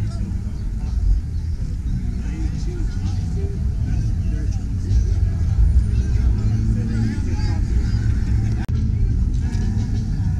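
Crowd chatter from many people talking at once over a steady low rumble, with no single sound standing out.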